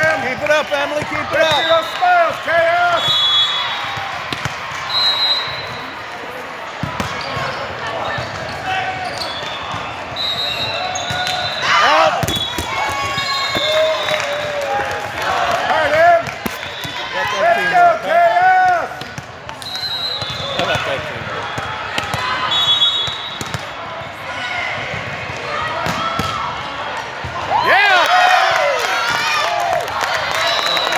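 Indoor volleyball rally: players and spectators shouting and calling over one another, with the ball's sharp hits and bounces on the court. The voices swell into cheering near the end as the point is won.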